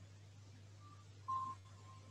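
Near-silent room with a low steady hum, broken about a second and a half in by a single short beep, a quarter of a second long, whose pitch lingers faintly afterward.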